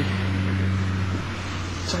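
A steady low mechanical drone, its higher tone dropping out a little past halfway.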